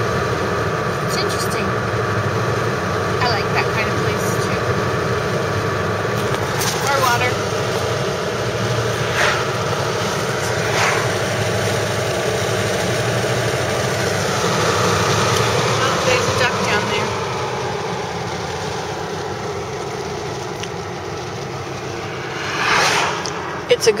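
Car driving along, a steady engine and road noise heard from inside the cabin.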